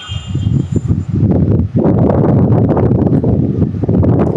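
Wind buffeting a phone microphone as a low, blustery rumble. It builds and becomes steady and loud from about halfway in.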